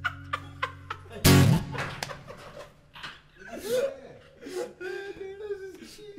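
The last acoustic guitar chord of a take rings out and is cut off by a loud thump a little over a second in, followed by men laughing and chuckling.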